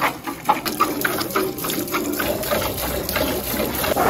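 A cow being milked by hand: short jets of milk squirting in a quick rhythm, about three to four squirts a second.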